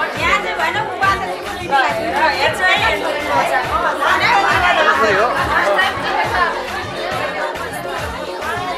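Many voices chattering at once over background music with a steady beat.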